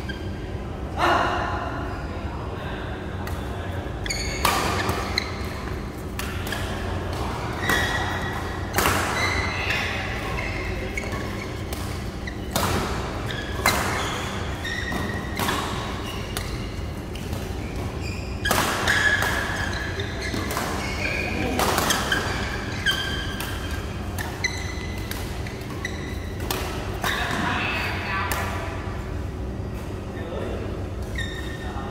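Badminton doubles rally: rackets striking the shuttlecock in sharp hits at irregular intervals, echoing in a large hall over a steady low hum.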